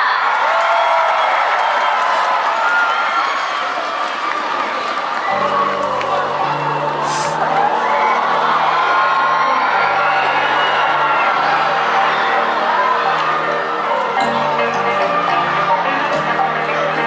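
Crowd cheering and whooping. About five seconds in, a song's intro music begins with a deep, steady bass line, and the cheering carries on over it.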